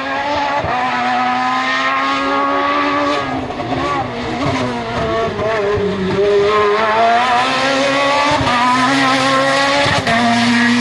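Peugeot 207 S2000 rally car's naturally aspirated four-cylinder engine at high revs. Its pitch sinks from about three to six seconds in as the car slows for a bend, then climbs again as it accelerates away.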